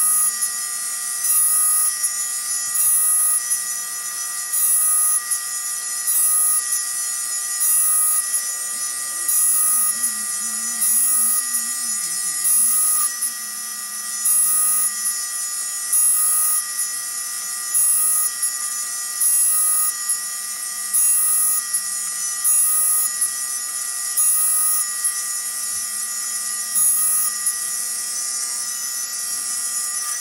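Tool and cutter grinder running steadily while its cup wheel grinds the clearance on the teeth of a 28-tooth milling cutter. A short grinding hiss of wheel on steel comes about every second and a half as each tooth is passed across the wheel.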